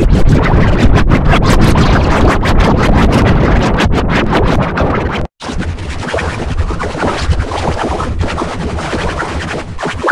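Loud, heavily distorted, effects-processed music clip with a rapid stuttering crackle through it. It cuts out about five seconds in, and a second, duller-sounding processed clip starts straight after.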